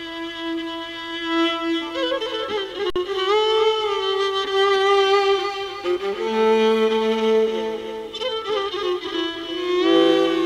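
Solo violin playing Persian classical music in the Shur mode: long held notes joined by sliding ornaments, with a lower second note sounding beneath the melody from about six to eight seconds in.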